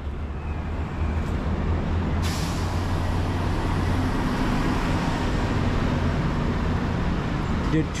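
Road traffic passing below, with a city bus and heavy vehicles giving a steady low engine rumble. A sudden hiss sets in about two seconds in and fades slowly.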